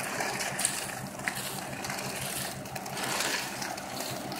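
Ready-mix concrete truck running while wet concrete slides down its chute into a footing trench, with shovels working through the concrete and a few sharp clicks.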